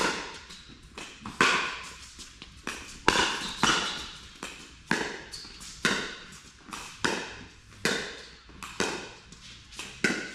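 A pickleball rally: hard paddles striking a plastic pickleball, with the ball bouncing on the court. There are about a dozen sharp pocks, spaced half a second to a second apart, each echoing in a large hall.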